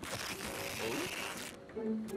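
Cartoon sound effect of an airport baggage conveyor machine running, a steady noisy whir that cuts off about a second and a half in. A short voice-like hum comes near the end.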